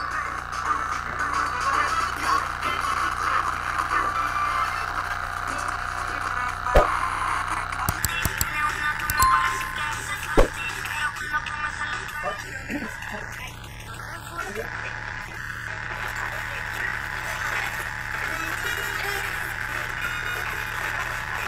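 Small pocket radio playing a broadcast of music and a voice through its little speaker, running on current from a Stirling-engine generator rather than batteries. A few sharp clicks come near the middle.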